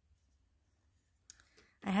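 Near silence broken by a single brief click a little over a second in, just before speech resumes.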